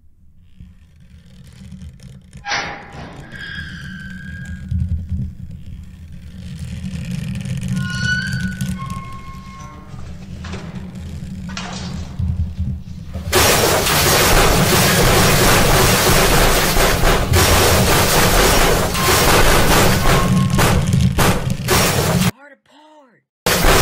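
Film soundtrack of a ship striking an iceberg: a low music score runs under collision sound effects. Short high squealing tones come through in the first half, then a loud, continuous rushing crash takes over about halfway through.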